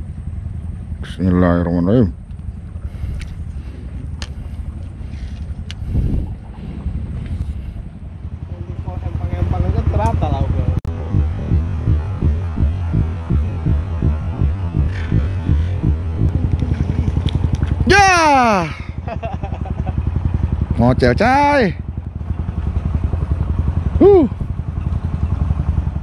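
A steady low motor throb, pulsing quickly and evenly, runs through the clip. A few short shouted voice calls cut in over it, one sliding down in pitch about two-thirds of the way through.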